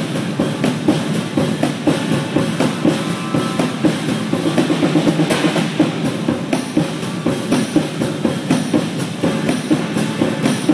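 Two drum kits played together in a fast, dense, unbroken stream of drum and cymbal strokes, with bass drum underneath.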